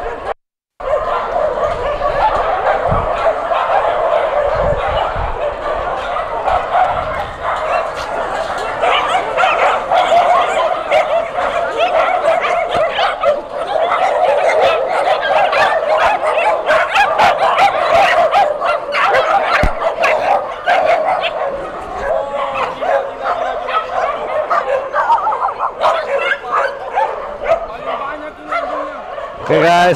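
A large pack of dogs barking and yipping at once, many barks overlapping without a break. The dogs have just been let out of their pen.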